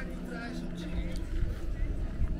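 Indistinct voices of people talking nearby, over a low steady hum and rumble of outdoor background noise.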